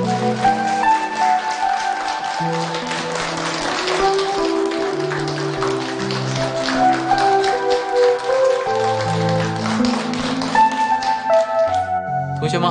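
A small group clapping their hands, with a slow melodic score of sustained notes playing over it.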